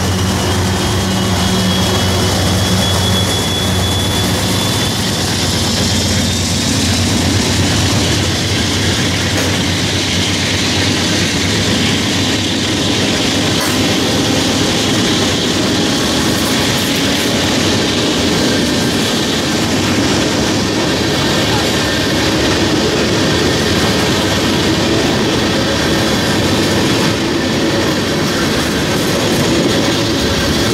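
A freight train of empty tank cars rolling past at speed, with a steady loud rumble of steel wheels on rail. A diesel locomotive's low engine drone fades away in the first few seconds as the last locomotive passes, with a faint high wheel squeal early on.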